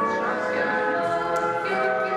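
A group of voices singing together as a choir, holding long notes that change every second or so.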